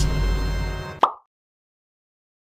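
Anime soundtrack music over a deep rumbling effect as a castle is hurled, fading out within the first second. A single short pop about a second in, then dead silence.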